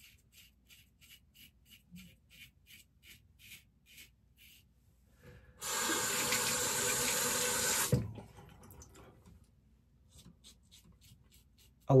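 Stainless steel safety razor scraping through lathered stubble in short, faint strokes, about three a second. A little past halfway a tap runs for about two seconds, the loudest sound, then the faint strokes resume.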